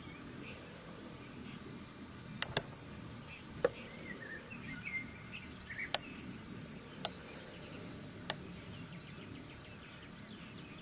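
Insects chirring steadily in one continuous high band, with a few faint bird chirps around the middle. Six sharp clicks or knocks break in at intervals, the loudest about two and a half seconds in.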